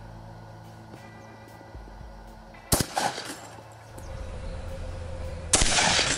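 A single shot from a 12-gauge Benelli Nova pump shotgun firing a slug, a sharp crack a little before the middle with a short echo after it. Music comes in during the last two seconds, with a loud noisy burst about half a second before the end.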